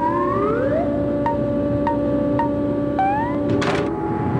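Comic film background score: electronic tones slide upward over a steady held note, with a short beep about every half second. The slides rise again near the end.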